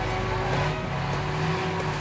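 City street traffic sound effect: a motor vehicle engine running steadily under a low traffic rumble.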